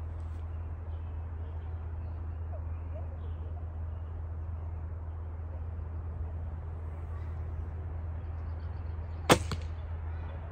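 A 35-pound Bodnik Mingo longbow shot: a single sharp snap of the string on release, with the arrow hitting the target almost at once, near the end.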